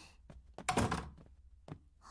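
A door being shut, a single thunk about two-thirds of a second in, with a few faint taps before and after it.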